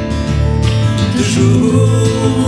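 Live band playing an instrumental passage: strummed acoustic guitar with electric guitar and bass guitar.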